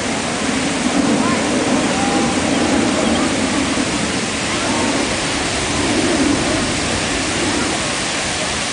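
Fountain water jets spraying and splashing into a large shallow pool: a steady, even rushing hiss, with faint distant voices of people mixed in.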